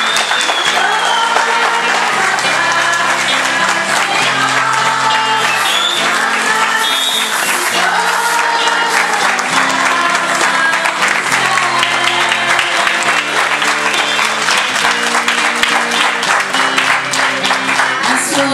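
A crowd singing a hymn with accompanying music and clapping along in a steady rhythm.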